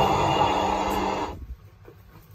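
Music from a playing video coming through an Android double-DIN car stereo driving a single loudspeaker, stopping abruptly about a second and a half in. After that, a few faint clicks.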